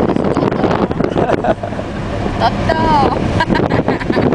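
Wind rushing in through the open windows of a moving Renault 19 and buffeting the microphone, over the car's running noise, with brief voices and laughter.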